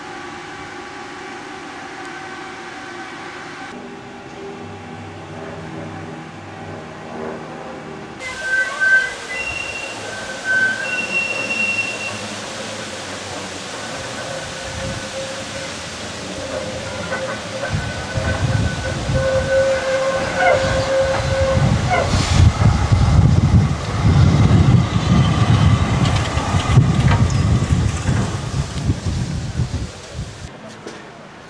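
A tram running on curved track: thin, high wheel squeals come and go from about eight seconds in, and a loud rumble of wheels on the rails builds in the second half. Before that, a steady hum of several tones.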